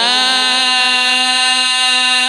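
A male Qur'an reciter holding one long, steady note in melodic recitation, amplified through a microphone and sound system with a strong echo trailing earlier pitch glides.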